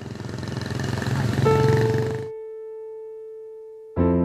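Cartoon sound effect of a motor scooter pulling away: an engine-and-rush noise that grows louder for about two seconds, then stops abruptly. A single held tone comes in about a second and a half in and fades slowly.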